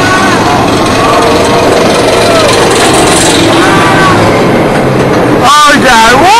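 Chain lift of the Superman: Ultimate Flight flying roller coaster clattering loudly and steadily as the train climbs, with riders' voices over it. Pitched, voice-like cries swell near the end.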